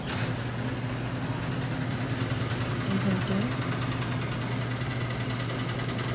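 A steady low machine hum that sets in at the start and fades just after the end, over background store noise.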